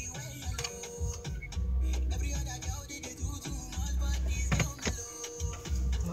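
Hit-radio music playing from the car's radio, heard inside the cabin, with a strong bass line.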